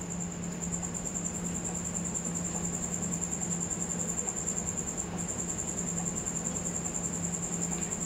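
Steady high-pitched insect trill, typical of a cricket, with a low steady hum beneath it.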